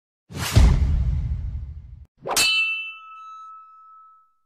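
Logo-intro sound effect: a deep boom that rumbles for about two seconds, then a sharp metallic clang whose ringing tone fades away over the last second and a half.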